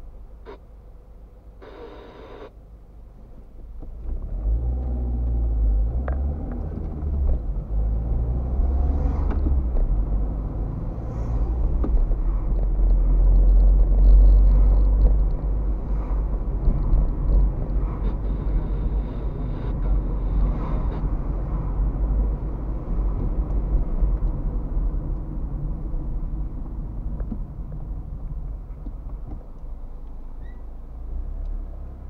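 Car engine and road rumble heard from inside the cabin as the car pulls away from a stop about four seconds in and drives on, loudest around the middle.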